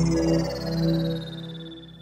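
Intro music: a sustained chord with a cluster of high tones gliding steadily downward, fading out over the two seconds.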